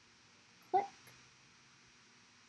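A woman saying one short word, "click", about a second in; otherwise near silence, only faint room tone.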